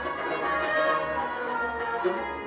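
Instrumental passage of Sufi devotional music: a harmonium and a bowed string instrument hold a melody over a regular beat on a clay-pot drum, about two strokes a second.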